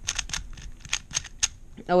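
MoYu WeiLong GTS3M 3x3 speed cube being turned fast by hand: a quick, irregular run of sharp plastic clicks as its layers snap round. The cube is dry out of the box, unlubricated, with its springs loosened.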